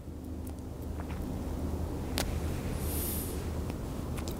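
Steady low outdoor background rumble, with a man drawing on a cigar and softly exhaling the smoke, and a faint click about two seconds in.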